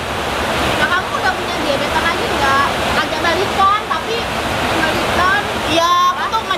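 Steady rain, an even rushing noise that holds at the same level throughout, with voices and laughter breaking in here and there over it.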